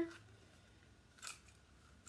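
Quiet room tone with one faint, brief handling click a little over a second in, as a key holder and a small crossbody bag are handled.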